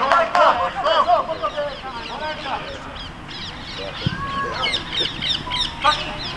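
Shouts and calls of children's and coaches' voices carrying across a football pitch, in short arching calls with one longer call about four seconds in. A dull thud sounds just after four seconds.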